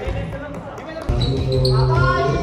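Basketball bouncing on a wooden gym floor amid players' voices in a large hall. About a second in, music with a steady low note comes in suddenly and loudly.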